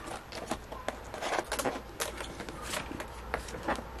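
Rustling and short crackles of a clear plastic expanding wallet being opened and handled while a banknote is slipped into one of its pockets.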